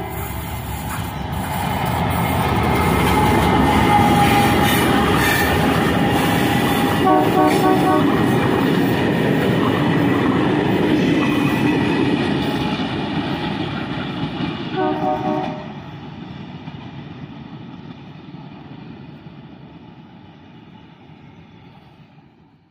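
Diesel-hauled passenger train passing close by: the locomotive and coaches rumble loudly over the rails, then fade steadily as the train moves away. Two brief pulsing horn toots sound partway through, the second as the noise is already dying away.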